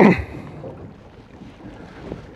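Wind on the microphone and steady low background noise aboard a boat at sea, in a pause between speech.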